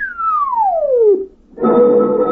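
A single electronic tone sliding steadily down from high to low over about a second, an old-time radio sci-fi sound effect. About a second and a half in, a loud music bridge starts, with held chords.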